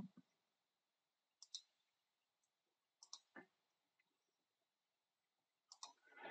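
Near silence with a few faint computer mouse clicks, about a second and a half in, about three seconds in, and just before the end.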